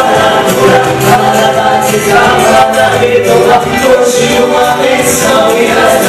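A man and a woman singing a Portuguese gospel song together into handheld microphones, amplified through a church sound system, in long held notes with harmony.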